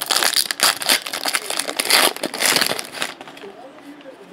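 Foil trading-card pack wrapper crinkling as it is torn open and handled, a dense crackle that dies down about three seconds in.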